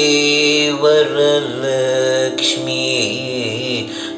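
Male Carnatic vocalist singing a slow, ornamented line that glides and oscillates between notes over a steady drone, likely the opening of the first item in raga Shree.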